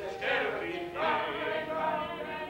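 Live singing of a musical-theatre song on stage, the voices holding long notes.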